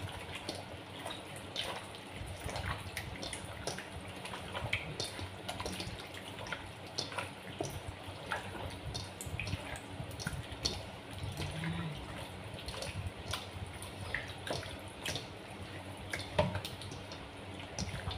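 Bare hands squishing and kneading pork ribs in a wet, sticky marinade batter of egg, flour and water in a stainless steel bowl: faint, irregular wet squelches and small clicks.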